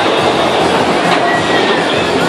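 Bumper cars running on the steel floor of a dodgem rink: a loud, steady rumble and clatter of wheels and electric motors.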